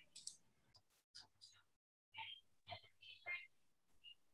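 Near silence on an online call line, with faint scattered clicks and brief soft noises; the line drops to dead silence for a moment about two seconds in.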